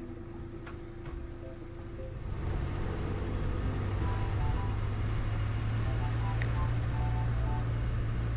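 Background music with sustained low notes and short held melody notes, growing louder about two seconds in, over the steady noise of a car driving.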